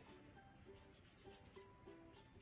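Faint scratching of a felt-tip marker rubbed over a wooden toothpick in short, quick strokes, several a second, under quiet background guitar music.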